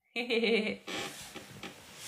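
A woman's short laugh just after the start, then quieter rustling and handling noise as the phone is moved.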